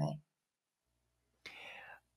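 A spoken word trails off, then near silence, then about a second and a half in a faint breath as a person draws in air before speaking.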